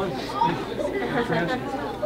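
Speech only: overlapping voices talking and chattering.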